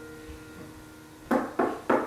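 A keyboard piano chord dying away, then three quick knocks about a third of a second apart near the end, like the door-knock in the song.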